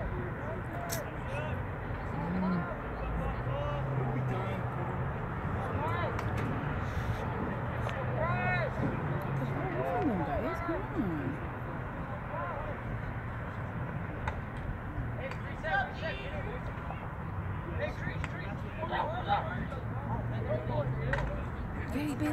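Scattered shouts and calls from players and people along the sideline, over a steady outdoor wash of noise on an open field.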